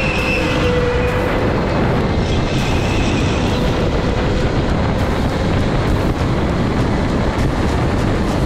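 Indoor rental go-kart running at speed through corners: a loud, steady roar of motor, tyres and wind on the onboard microphone, with a faint whine that drifts in pitch during the first few seconds.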